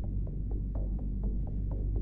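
Steady low electrical hum with faint short ticks repeating about four times a second.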